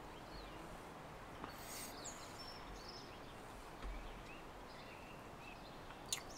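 Faint outdoor background noise, steady throughout, with a few soft, short bird chirps scattered through it.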